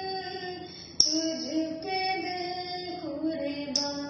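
A woman singing a slow melody solo, holding each note for about a second before stepping to the next.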